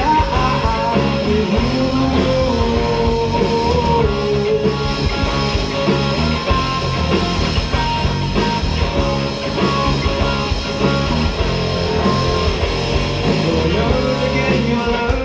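Live rock band playing an instrumental stretch with no singing: an electric guitar plays a wavering melody line over other guitar, bass and drums, loud and steady throughout.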